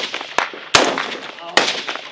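Rifle gunfire in combat: three sharp shots at uneven spacing, the last two loud, each trailing off in a short echo.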